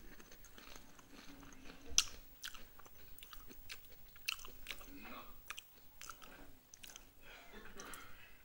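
Clicks and knocks of things being handled, the loudest a sharp knock about two seconds in, played back from a television's speaker.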